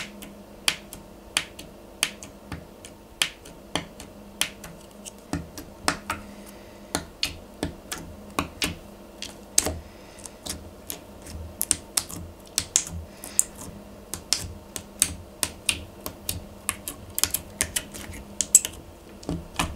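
Orange glitter slime being poked and pressed with a thin stick, giving sharp wet clicks and pops as air pockets in it burst, irregular, a few a second and coming faster in the second half.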